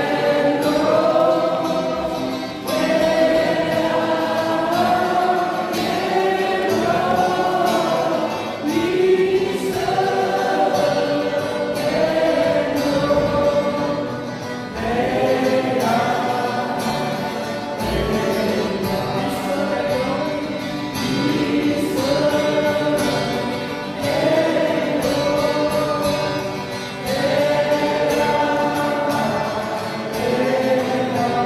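A congregation singing a hymn together, with an acoustic guitar accompanying, in long sustained phrases with brief breaks between them.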